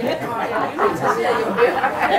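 Several audience members talking over one another at once, an indistinct chatter of overlapping voices.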